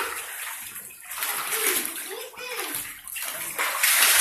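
Pool water splashing and sloshing continuously as a child paddles through it in an inflatable swim vest.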